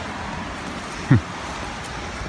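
Steady outdoor background hiss, with one short, falling vocal sound from a man a little past halfway through.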